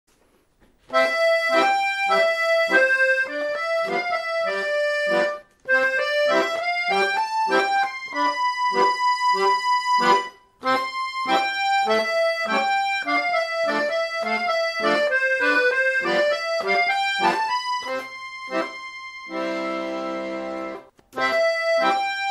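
Accordion playing a melody in short, separate notes, breaking off twice between phrases. Near the end a phrase closes on a long held chord with bass, then the playing starts again.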